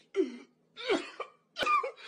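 A man crying hard: three short, gasping sobs in quick succession, each a wavering cry that bends in pitch.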